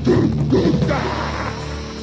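Buzzing, droning noise passage in a lo-fi goregrind recording: low pulses about twice a second for the first second, then a steady buzzing hum.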